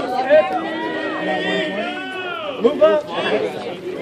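A crowd of people talking and calling out over one another, several voices overlapping at once.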